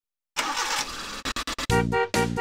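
A car engine cranking in a cartoon sound effect: a loud rush of noise, then a few quick sputtering pops. Music with repeated pulsing chords comes in near the end.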